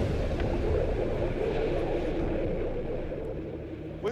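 Deep, rushing rumble of an explosion at sea rolling away, with no clear pitch, easing off over the last second.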